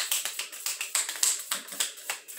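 A deck of tarot cards being shuffled by hand: a quick, steady run of crisp clicks as the cards slap past each other, several a second.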